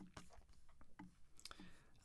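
Several faint, irregularly spaced clicks of a computer mouse over near silence.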